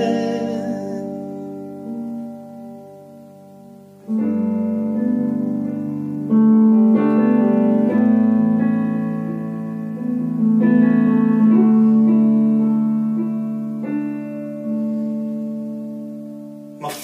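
Digital piano playing a slow instrumental passage of held chords: the first chord fades away over about four seconds, then new chords are struck every few seconds and left to ring.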